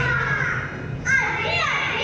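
A group of young children's voices in chorus, calling out lines together, louder from about a second in, over a low steady hum in the first part.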